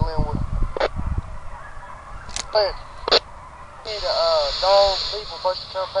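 A pack of hounds baying, short rising-and-falling cries coming several a second and thickest in the second half. A steady high hiss comes in about four seconds in.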